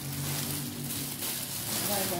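Cellophane gift wrapping crinkling and rustling as it is handled, with a low steady hum underneath.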